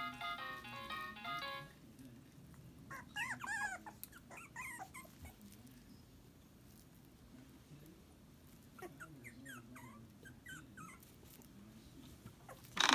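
Four-week-old Shetland sheepdog puppies whimpering and squeaking in short, high cries that rise and fall in pitch, in two spells: one a few seconds in and another near the end. A short electronic tune plays over the first couple of seconds and stops.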